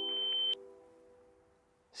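Film-score sound design: a held chord under a steady high-pitched beep-like tone. The tone cuts off sharply about half a second in, and the lower notes fade out to near silence.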